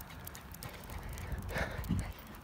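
Quick footsteps tapping on an asphalt path, a light patter of many small taps over a low rumble from the moving handheld phone.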